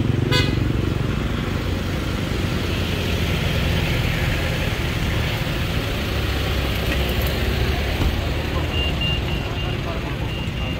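Street traffic: a steady engine rumble from passing cars and motorcycles, with a sharp click just after the start and a row of short, high beeps near the end.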